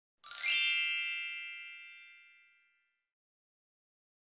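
A single bright chime sound effect: a quick high sparkle over several ringing tones that fade away over about two seconds.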